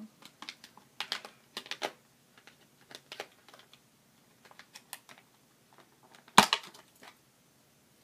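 Stiff plastic blister packaging clicking and crackling in the hands as lipsticks are pushed back into it: scattered small clicks, with one sharper, louder snap about six seconds in.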